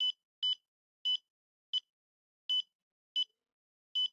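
Fingertip pulse oximeter beeping in time with the heartbeat: about seven short, identical high beeps, roughly one and a half a second, each marking a detected pulse while it takes an oxygen-saturation reading.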